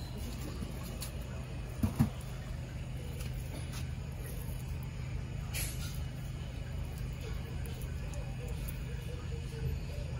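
A steady low hum, like a motor running, with a short double thump about two seconds in and a few faint clicks.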